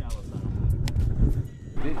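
Low, steady rumble of wind on the microphone, with a single sharp click about a second in.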